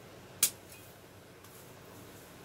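A single sharp snip about half a second in: pruning shears cutting off a lower branch while the plant is cleared out underneath.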